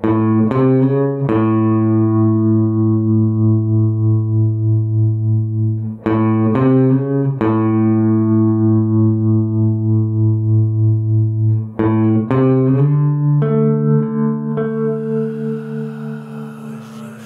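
Electric bass guitar playing a slow phrase three times over: four quick plucked notes, then one long held note ringing for several seconds. Near the end a hiss rises above it.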